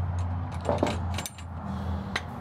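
Footsteps and light metal clinks from the stall divider hardware inside an aluminium horse trailer, with a few short knocks over a steady low hum.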